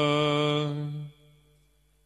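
The end of a long, steady held note of Sikh gurbani chanting, cut off about a second in and followed by near silence.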